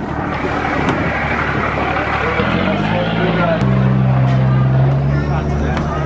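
River boat's engine running loud, its low drone coming up about two and a half seconds in and growing stronger again a second later as it throttles up, over a wash of noise and people's voices.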